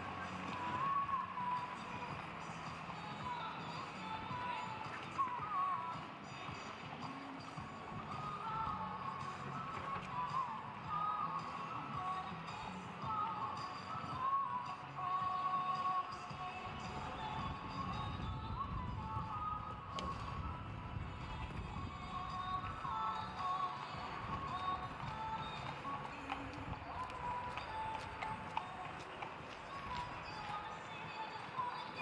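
Music playing steadily, with a melody line wandering around the middle of the range.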